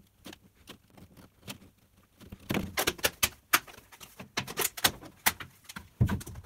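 Thin plastic bucket lid being cut through with a utility knife and handled, giving sharp clicks and cracks, sparse at first and coming thick and loud from about halfway through.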